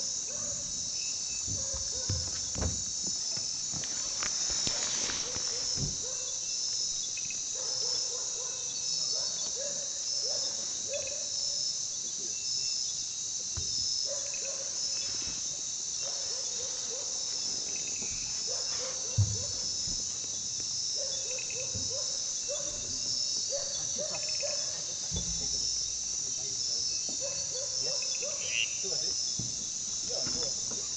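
Nighttime rainforest insect chorus: a steady, high-pitched pulsing trill that never lets up. Shorter chirping calls come and go lower down, with a few soft knocks and one sharp click about 19 seconds in.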